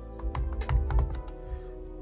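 Typing on a computer keyboard: a quick run of separate key clicks, over steady background music.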